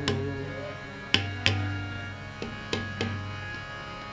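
Harmonium holding steady chords while the tabla plays a sparse run of about seven strokes. The two loudest strokes come a little over a second in, with the deep boom of the bass drum under them. This is the instrumental accompaniment of Sikh kirtan between sung lines.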